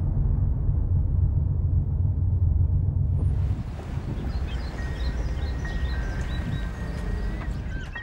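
Car engine and road rumble heard from inside a moving car. About three and a half seconds in it gives way to quieter outdoor street ambience with short high bird chirps.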